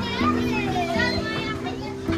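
Children's voices calling and chattering, with music of steady held notes playing underneath.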